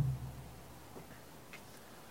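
A quiet pause with a low room hum and two faint short clicks, about a second in and again half a second later.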